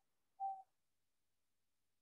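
Near silence, broken about half a second in by one brief, faint single-pitched sound, like a short hum.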